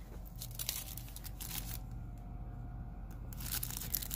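Crinkling of a cellophane wrapper being handled: a run of sharp crackles, a quieter stretch in the middle, then more crackling near the end.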